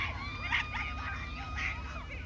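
Girls' high-pitched screams carrying from across a soccer field: several short shrieks and long held high cries, over a low steady hum.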